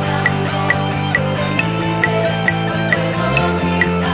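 Full-band worship rock instrumental with drums, bass and guitars at 135 BPM over a metronome click track, about two clicks a second with a higher-pitched accent on every fourth beat. A little past three seconds in, the bass steps to a new note as the chord moves from G to F.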